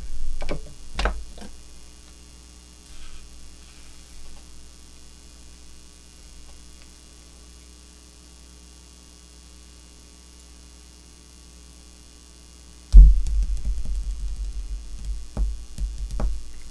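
A few sharp clicks as a jig hook is seated in a fly-tying vise's jaws, over a steady low mains hum. Near the end, a sudden loud low thump and a run of rumbling knocks from handling at the bench.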